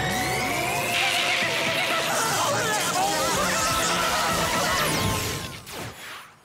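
Cartoon sound effects of a brain-swapping machine switched on by a lever: a rising whine as it powers up, then a dense warbling electronic racket over music. It fades out about five and a half seconds in.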